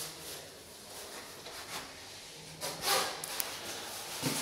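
Quiet room with faint rustling, then a short scuff about three quarters of the way through followed by a few light clicks.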